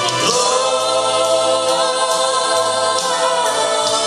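A man singing one long held note into a microphone, over gospel backing music with choir voices.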